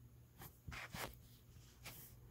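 Chef's knife cutting small broccoli florets on a glass cutting board: four short, faint cuts at an uneven pace.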